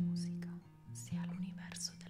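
Acoustic guitar playing slow plucked notes, with soft whispering over it.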